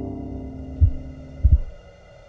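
Two deep, short thuds, the first just under a second in and the second about half a second later, over a low sustained chord that slowly fades. This is a film score or sound-design pulse.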